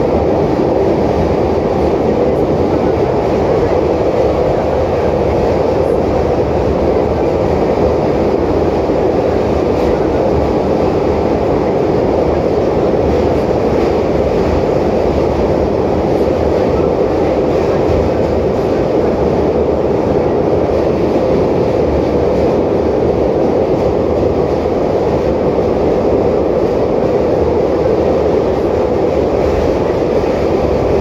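Kazan Metro 81-553.3 train running between stations through a tunnel, heard from inside the car at the doors. It is a loud, steady noise from the wheels and running gear, level throughout with no braking or stops.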